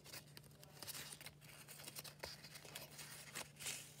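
Faint crinkling and crackling of a folded paper origami pop-it as a finger is pushed through its bottom to open it out, in scattered small crackles.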